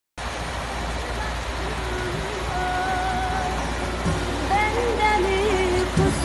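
Ford 5600 tractor's three-cylinder diesel engine idling steadily. Music with a wavering, Middle Eastern-style melody comes in over it after a second or two and grows louder near the end.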